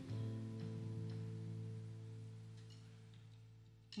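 Opening of a slow pop ballad played live: one sustained instrumental chord that slowly fades, with a few faint higher notes over it.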